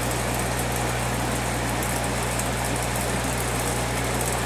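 Aquarium filtration equipment running: a steady low electric hum with an even hiss over it.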